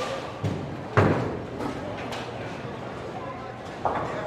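Bowling-alley background noise with two thuds about half a second apart near the start, the second louder.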